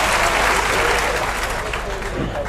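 A large crowd applauding, a dense patter of many hands clapping that eases off slightly near the end.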